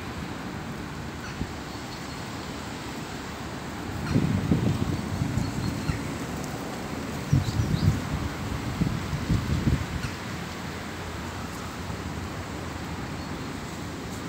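Outdoor ambience of steady distant traffic hiss, with wind buffeting the microphone in two spells of low rumbling, about four seconds in and again around eight seconds, and a few faint high bird chirps.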